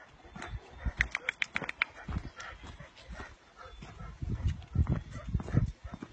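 Footsteps on a gravel path with handling noise, and a quick run of short clicks about a second in.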